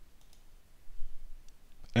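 A few faint computer mouse clicks, as of clicking an on-screen tab, with a man's voice starting to speak just before the end.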